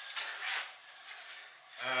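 A soft breathy rustle about half a second in, then a low, drawn-out voiced 'ohh' near the end, the start of an exclamation of 'Oh wow!'.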